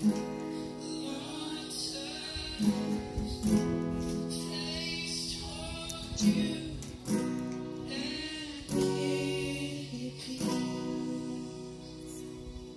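Acoustic guitar strummed slowly, one chord every second or two, each chord left to ring.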